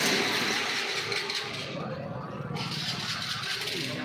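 Busy street noise: chatter of a crowd mixed with a motor vehicle running close by.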